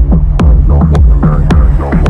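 Loud, bass-heavy electronic dance music: a deep sustained bass under short falling synth notes, with a sharp percussive hit about every half second.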